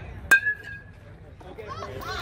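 Metal youth baseball bat hitting a pitched ball: one sharp ping with a ringing tone that fades within about half a second. Voices start to shout near the end.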